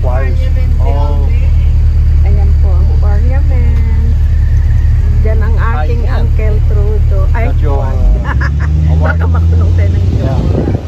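Steady low rumble of an open-top tour bus running, heard from its upper deck, with people's voices over it. About eight seconds in, the rumble changes note.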